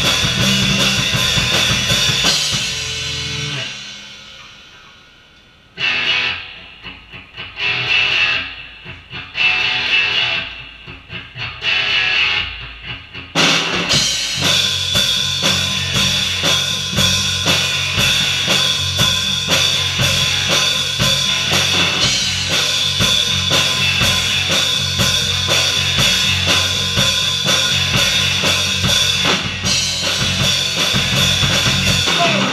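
Live rock trio of electric guitar, bass guitar and drum kit playing loud through amplifiers. The band drops away about three seconds in and then plays a few accented stabs that ring out between about six and thirteen seconds. After that it crashes back in with a steady driving beat.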